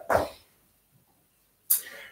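A man's short, forceful breaths out during exercise: one just after the start and a sharper, hissy one near the end, with near silence between them.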